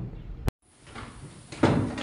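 A sudden break about a quarter of the way in, then a cluster of loud knocks and bumps near the end, like wooden benches and desks being jostled.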